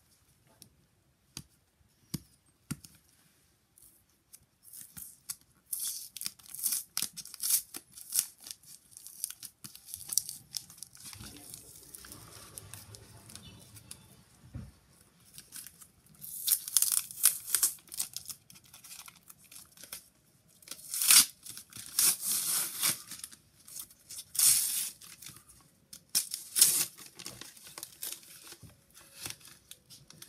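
A mail package being torn open by hand, its wrapping ripped and crinkled in repeated bursts with short pauses between. A few faint clicks come first, and the tearing starts about five seconds in.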